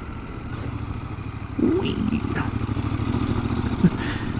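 Triumph Scrambler's parallel-twin engine running on a dirt road. About one and a half seconds in, the engine note rises and holds as the throttle opens, then falls back just before the end.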